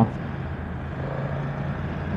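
BMW F900R's parallel-twin engine running steadily at a light cruise in third gear, around 50 km/h, with wind and road noise.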